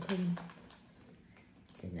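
A short burst of a man's voice, then a quiet stretch with a few faint clicks and rustles of hands handling something at the counter, and a voice again near the end.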